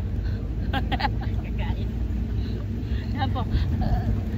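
Running noise of a moving vehicle: a steady low rumble of engine and road.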